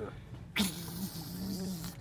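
A person's drawn-out, low, wordless vocal noise lasting about a second and a half, starting with a sudden breathy burst.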